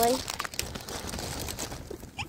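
Packaging crinkling and rustling as it is handled, a dense crackly rustle that runs on after a spoken word.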